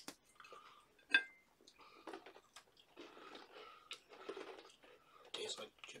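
Chewing and crunching of crisp Chips Ahoy chocolate chip cookies, with one sharp click about a second in.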